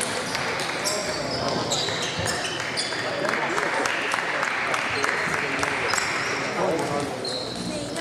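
Table tennis balls clicking irregularly off bats and tables during rallies, over a murmur of voices in the hall, with a few short high squeaks.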